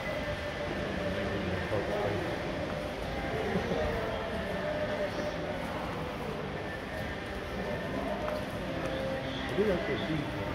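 Shopping-mall concourse ambience: a steady murmur of distant, indistinct voices over a constant background hum, with a brief louder voice just before the end.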